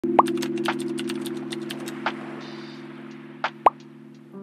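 Title-animation sound effects: two quick rising pops, one just after the start and one near the end, over a sustained low chord that slowly fades, with a scatter of light clicks in the first couple of seconds.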